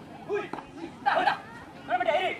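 Men's voices calling out in short shouted bursts, three times, the loudest about a second in, over a low murmur of crowd chatter.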